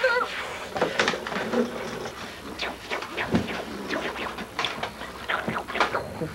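Scattered knocks, thumps and rustling of people moving about in a small room, with no steady rhythm.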